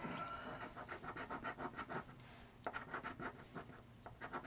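A quarter scraping the latex coating off a scratch-off lottery ticket in quick repeated strokes, pausing briefly a little past halfway before scratching again.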